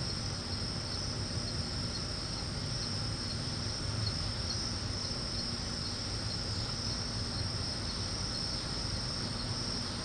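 Crickets chirping steadily in a continuous high trill, over a low steady hum.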